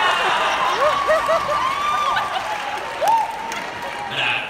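An audience applauding and cheering, with many short whoops and shouts over the steady clapping.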